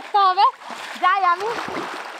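Pond water splashing and churning as people wade and swim through it, arms sweeping the surface.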